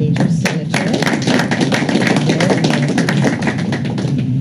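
A small group of people applauding: many quick hand claps together, starting just after the start and thinning out near the end.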